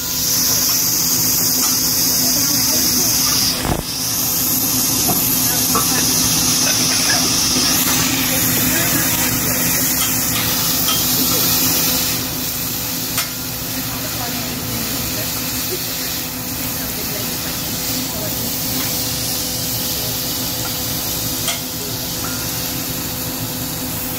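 Steak and chicken sizzling on a hot teppanyaki flat-top griddle, with a loud steamy hiss for about the first half that then dies down to a softer sizzle. Occasional light taps of a metal spatula are heard over a steady low hum.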